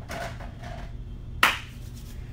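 Dry-erase marker squeaking across a whiteboard in short strokes, then a single sharp hand clap about one and a half seconds in, over a steady low hum.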